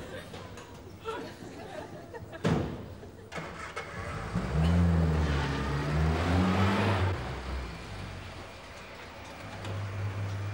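A knock, then a car engine starting and revving unevenly for a few seconds before settling down.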